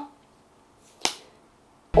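A single sharp click about a second in, with a short room echo after it, in an otherwise quiet room.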